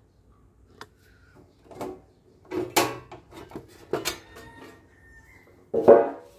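Handling noises from a CD player's metal casing and cables: a string of irregular knocks, scrapes and rubs, with the loudest clunk near the end.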